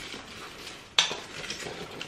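Frozen vegetable scraps dropping from a silicone storage bag into an empty cast-iron pot: one sharp clatter about a second in, amid faint handling noise from the bag.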